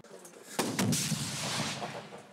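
Gunfire: a few sharp shots about half a second in, followed by a dense rush of noise that fades near the end.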